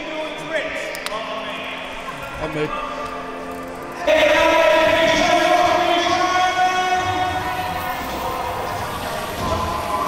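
Chatter of a crowd of children, then a sudden louder stretch about four seconds in, made of long held tones.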